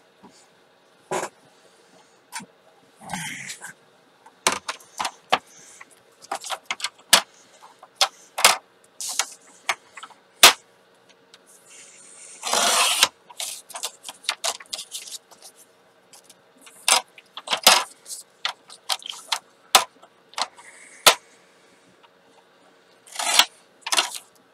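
Paper and a sliding paper trimmer being handled: a run of sharp clicks and taps as the cardstock is set against the trimmer's rail, with a few short swishes of the trimmer blade slicing through the paper. The longest swish comes about halfway through, and another comes near the end.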